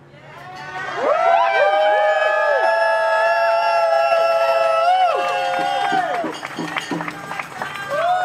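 Crowd of protesters answering the speaker with one long shout in many voices, swelling in about a second in, held for about five seconds, then breaking off into scattered calls.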